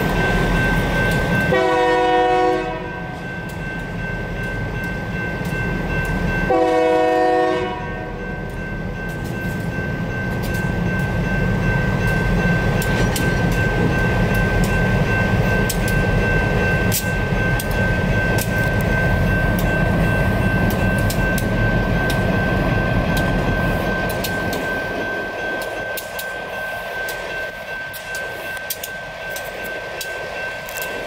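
Union Pacific diesel freight locomotive sounding its horn twice, each blast a little over a second long, then rumbling past with wheel clicks over the crossing. Through it all a crossing's electronic bell rings steadily. The engine rumble fades near the end.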